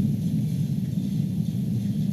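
Steady low hum of room background noise, even throughout with no distinct events.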